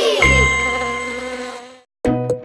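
End of a cartoon channel's logo jingle: the tail of a swooping sound effect, then a bright ding over a low bass note that rings on and fades away.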